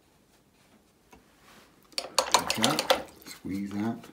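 A paintbrush clinking and rattling against a hard pot or palette: a quick run of sharp clinks lasting about a second, about halfway through. A short voiced sound follows near the end.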